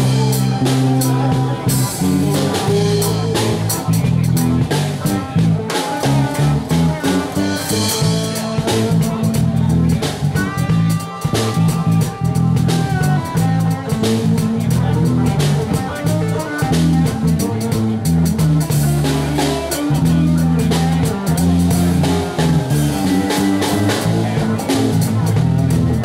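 Live band playing a song with drum kit, guitar and keyboard, loud and continuous.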